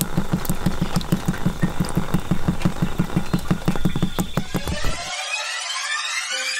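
An engine idling with a fast, even low throb, which stops abruptly about five seconds in as a rising swoosh of music starts.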